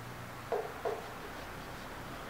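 Two brief soft sounds, about half a second apart, as a knife cuts through crisp bacon-wrapped filet mignon held with tongs, over faint room tone.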